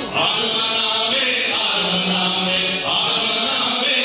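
Aromanian folk music played live, with long held notes in phrases a second or two long.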